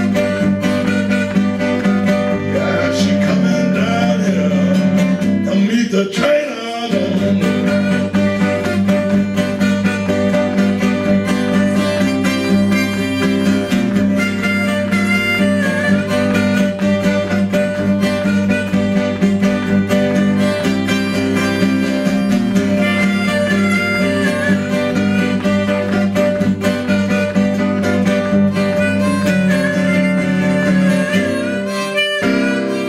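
Solo acoustic blues on acoustic guitar with a steady low bass note held underneath, and harmonica played from a neck rack over it.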